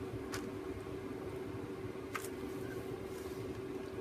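A steady low background hum with two faint, short taps about two seconds apart, from a clear acrylic stamp block being handled and pressed onto a paper journal page.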